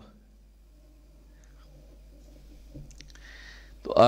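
A pause in a man's speech at a podium microphone: faint room hum, a soft click and a short breath-like hiss about three seconds in, then his voice starts again at the very end.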